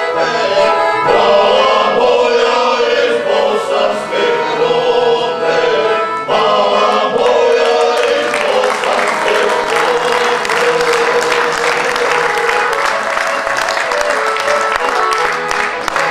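Men's folk vocal group singing together with an accordion accompanying them. In the second half the voices and accordion hold a long sustained note.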